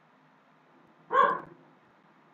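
A dog barks once, a short single bark about a second in.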